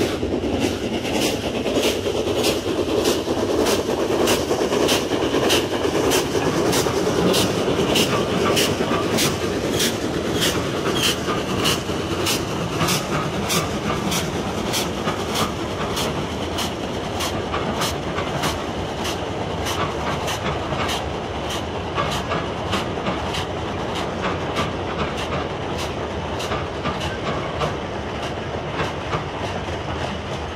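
Archive recording of a Gresley three-cylinder steam locomotive hauling an express at speed, with a steady rumble and a very regular clicking, about three clicks every two seconds. The rumble is heaviest in the first ten seconds and eases a little after.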